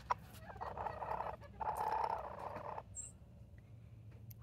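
A rooster giving two low, rattling calls, each about a second long, starting about half a second in.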